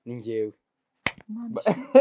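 Speaking voices, broken about a second in by a short pause and a single sharp click.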